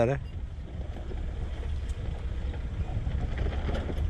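Low, steady engine rumble of a Suzuki Vitara 4x4 pulling itself up out of a ditch onto a dirt track.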